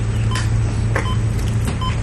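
Steady low machine hum with two short electronic beeps from medical monitoring equipment about a second and a half apart, plus a few brief clicks of equipment being handled.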